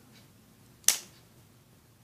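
Plastic Happy Meal toy figure of Buck snapping round once with a single sharp click as its spring-loaded spin latch is released by a touch on its hand, about a second in.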